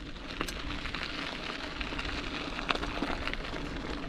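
Tyres rolling over a gravel and dirt path: a steady crunching hiss with scattered small clicks.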